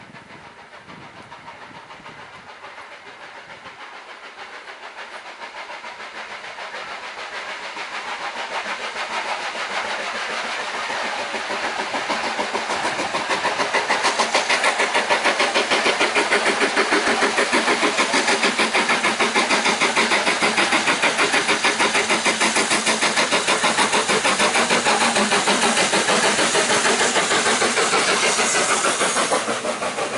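Steam locomotive working hard, its exhaust beating in a fast, even rhythm that grows steadily louder as it approaches, loudest from about halfway through, then dipping slightly as it passes near the end.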